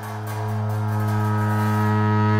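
Tibetan Buddhist ritual music: a sustained low drone held on one steady pitch, growing gradually louder, with faint high strokes in the first half.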